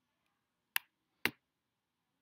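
Two short, sharp clicks about half a second apart.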